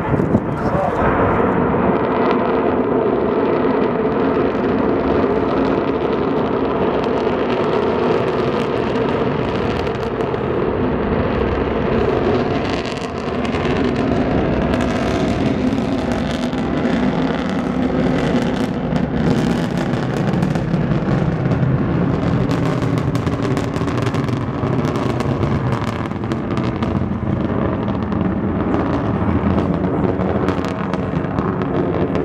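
Soyuz-FG rocket engines at liftoff and during the climb, heard from afar as a loud, continuous rumbling roar. Sharp crackling joins in from about halfway through.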